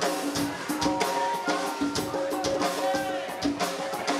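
Live rock band playing amplified: electric guitars and bass over a drum kit keeping a steady beat of about three to four hits a second.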